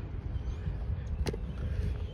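Low rumble of wind on the microphone, with a single sharp click a little past halfway through.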